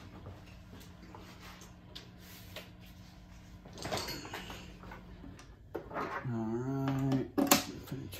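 Vintage 1979 Tusc JT450 amplifier and 4x12 cabinet humming steadily at idle, with faint handling clicks. An instrument cable is being plugged into channel two's input: a louder knock about four seconds in, a short low pitched sound, then a sharp pop near the end.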